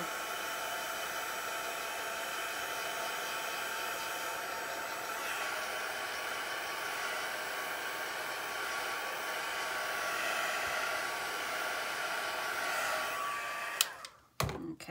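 Craft heat tool blowing hot air steadily with a faint motor whine, drying the ink on a stamped paper panel, then switched off with a click just before the end.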